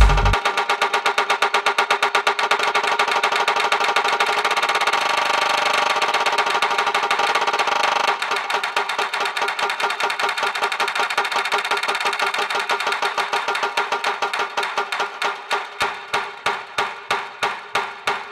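Electronic progressive house track in a breakdown: the kick drum and bass drop out just after the start, leaving a fast, repeating synth pattern. The lower part thins out about halfway through, and faint low thumps start coming back near the end.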